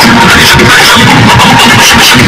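Very loud music with a steady fast beat, about four beats a second, accompanying a costumed dance performance.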